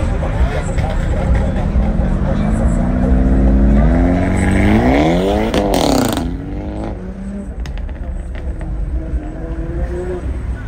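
Hyundai Elantra N's turbocharged 2.0-litre four-cylinder accelerating hard from a standing start, its engine note climbing steadily in pitch for about four seconds, then breaking off about six seconds in as the car shifts and pulls away, after which it is quieter.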